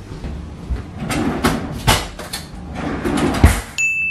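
Footsteps and the knocks and clatter of a kitchen drawer and metal cutlery being handled while a spoon is fetched. Near the end a steady high electronic tone starts suddenly and holds.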